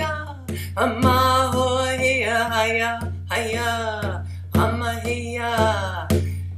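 A woman singing a Cherokee-and-English song of thanks to the water spirit, beating a large hide frame drum with a padded beater in a steady pulse of about two beats a second.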